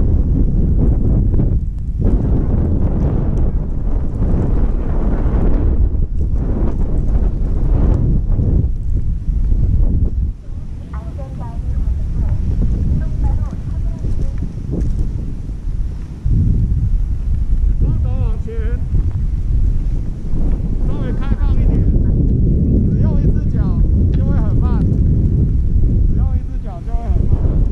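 Wind noise rushing over the microphone of a GoPro carried down a ski run. It is loud and steady and eases briefly around ten seconds and again around sixteen seconds.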